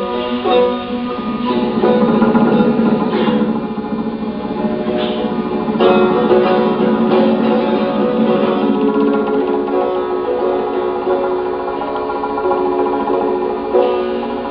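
Persian classical music led by a tar, a plucked long-necked lute, playing a continuous melodic passage. A busy stretch of rapid strokes runs between about two and five seconds in, and a strong new attack comes at about six seconds.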